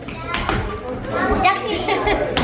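Several children's voices talking and playing at once, overlapping chatter with a few light knocks among them.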